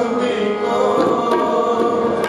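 Devotional group singing with held notes, accompanied by tabla strokes.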